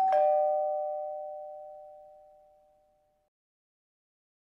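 Two-note ding-dong chime, a higher note and then a lower one a moment later, both ringing on and fading out over about three seconds.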